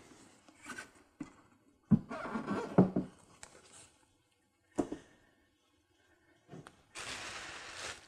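Handling noise of plastic parts and foam packing on a tabletop: a few light knocks and thuds as the plastic UV cover is set down and the packing is moved, then a brief rustling scrape near the end.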